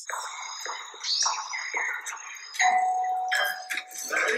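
The soundtrack of a music video playing back: a busy mix of voices and sound effects with steady high tones, and a single held tone coming in about two and a half seconds in.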